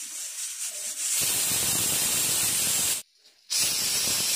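Stovetop pressure cooker venting steam from its weight valve: a steady, loud hiss with no whistle tone, building up about a second in. It cuts out for about half a second near the three-second mark, then resumes.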